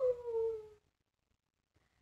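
A woman's drawn-out, wordless "ooh" falling in pitch, ending under a second in.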